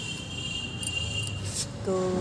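An insect trilling: one steady high-pitched tone that cuts off about three-quarters of the way through.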